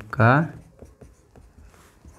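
Marker pen writing on a whiteboard: a string of faint short strokes as a line of handwriting is written.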